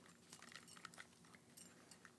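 Near silence, with a few faint scattered clicks and rustles as over-ear headphones are picked up and put on.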